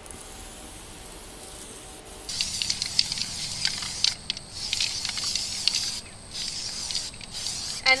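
Aerosol spray paint can hissing as orange paint is sprayed onto a straw doormat, in several bursts with brief breaks where the nozzle is let go.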